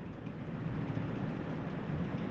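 Steady low background rumble and hiss with no voice, well below the level of the surrounding speech.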